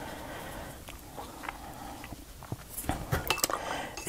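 Paintbrush working in a ceramic watercolour palette: faint brushing with a few light clinks against the ceramic, more of them near the end.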